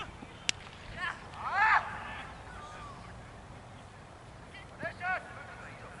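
A single sharp crack of a cricket ball off the bat about half a second in, followed by players shouting loudly and a few more short calls near the end.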